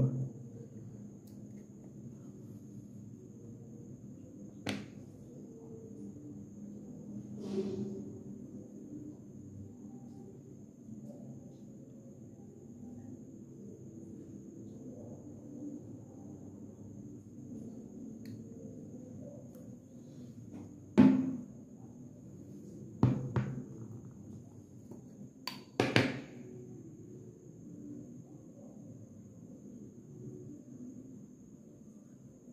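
Scattered knocks and clicks of hard plastic paint jars and lids being handled on a tabletop: a couple of light ones in the first eight seconds, then a cluster of sharper knocks between about 21 and 26 seconds, over a steady low hum and a faint high whine.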